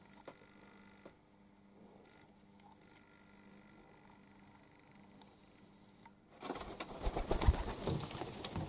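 A quiet room, then about six seconds in a sudden flurry of pigeon wingbeats and rustling as the bird takes off and flies.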